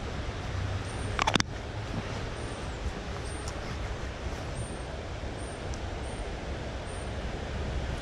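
Steady noise of a flowing river, with a single short, sharp click about a second in.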